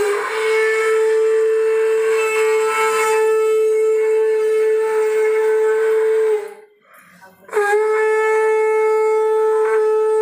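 Conch shell (shankh) blown in ritual: one long, steady, loud note that sags slightly as it ends after about six seconds. After a short pause for breath, a second long blow begins at the same pitch.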